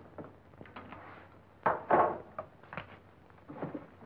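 Scattered knocks and clatters, the loudest a pair of sharp knocks about halfway through.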